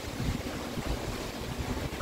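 Uneven low rumble under a faint steady hiss: the background noise of a large pedestrian underpass, picked up by a handheld camera while walking.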